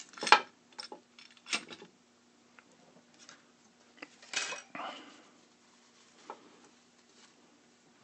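Small metal tools and parts clicking and clinking while a 3D printer extruder toolhead is worked apart by hand, with an Allen key and small screws among them. The sharpest clink comes just after the start and another about a second and a half in, with a softer rustle of handling about four and a half seconds in.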